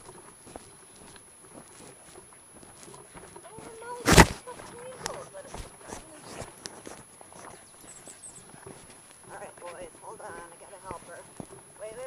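Wheeled dryland dog rig rolling over a rough dirt trail behind two trotting huskies: a steady run of small clicks and rattles from the rig and the dogs' feet, with one loud knock about four seconds in as the rig jolts.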